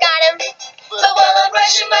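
Children's song about brushing teeth, a girl singing a solo line over band accompaniment, with a brief lull about half a second in before the music and singing pick up again.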